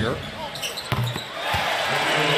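Basketball bouncing on a hardwood court, a couple of sharp thuds about a second in, over steady arena crowd noise.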